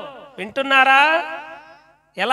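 A man's voice speaking Telugu into a microphone, a long drawn-out phrase with sliding pitch starting about half a second in.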